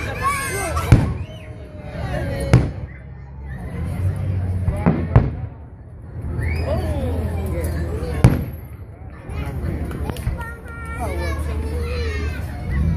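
Aerial firework shells bursting overhead: about five sharp bangs at uneven intervals, two of them close together about five seconds in, over a crowd talking.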